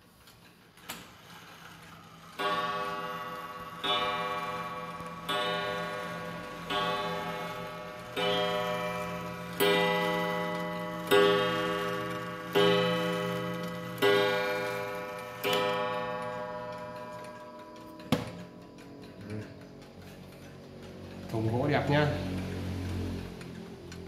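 Antique Japanese mechanical pendulum wall clock striking ten on its single coiled gong: ten ringing strikes about a second and a half apart, each dying away. The strikes are set off by turning the hands to the hour to test the strike. A sharp click follows about two seconds after the last strike.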